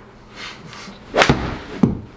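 A golf club strikes a ball off a hitting mat on a full-speed swing: one sharp crack a little over a second in, then a shorter, duller thump about half a second later.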